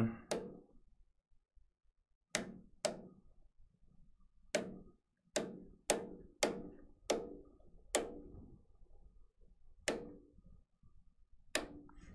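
The thread feed pinch-roller levers of a Melco EMT16X embroidery machine are pushed down one after another, each snapping shut with a sharp click as it closes its pinch roller back onto the thread. There are about eleven clicks, unevenly spaced, some in quick pairs.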